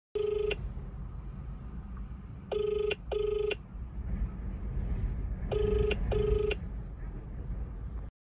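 Australian telephone ringback tone playing through a phone's loudspeaker: a low pitched double ring, the number ringing and not yet answered. A single beep just after the start, then two double rings about three seconds apart, over the low rumble of the car cabin.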